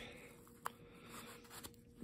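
Mostly near silence, with one faint click a little after half a second in and a couple of softer ticks later: a Rocktol multi-tool, stiff out of the box, being worked in the hands.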